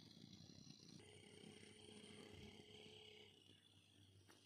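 Near silence: faint outdoor ambience, a low rumble with faint steady high-pitched tones that shift about a second in.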